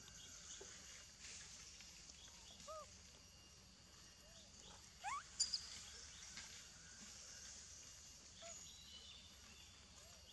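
Faint outdoor forest ambience: a steady high hiss with a few short, scattered animal calls. About five seconds in, a rising call and a brief sharp high sound, the loudest moment.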